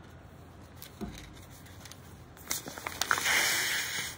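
A breath blown hard into the hole of a folded paper origami balloon to inflate it: about a second of steady airy rushing near the end, just after a few crisp crinkles of the paper.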